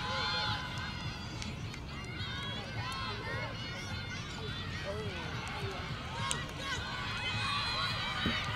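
Several women's voices shouting and calling over one another from the field and sideline during a point of ultimate frisbee, with no clear words, over a steady low rumble. A brief sharp click sounds about six seconds in.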